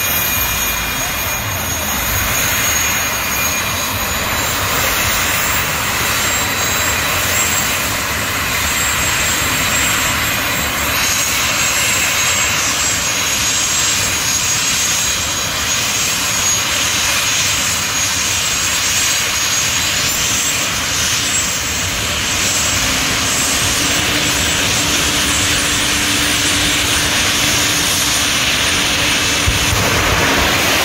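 Drag racing cars' engines running loud and steady at the starting line.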